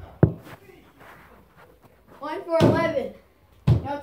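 A soccer ball thuds sharply on the floor of a small room a moment in and again near the end. Between the thuds comes a brief wordless vocal sound.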